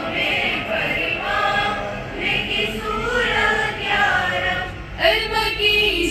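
A group of girls singing a prayer together in unison into a handheld microphone, the voices growing louder near the end.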